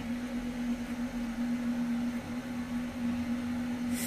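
A small electric motor running with a steady, even hum over a light hiss.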